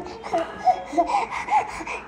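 Six-month-old baby vocalizing: about five short, high-pitched voice sounds in quick succession while being fed puffs by hand.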